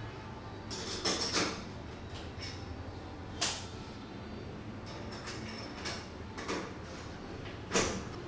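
Scattered light metal clicks and taps as a round-knob lockset's steel mounting plate and lock body are handled and seated against a door, with the loudest click near the end.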